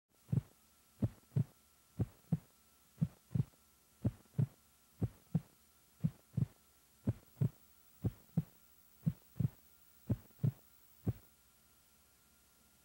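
Heartbeat sound effect: paired lub-dub thumps repeating steadily about once a second, stopping about a second before the end.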